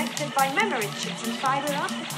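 Psytrance music from a DJ set: a repeating bassline under steady hi-hats, with sounds that slide up and down in pitch.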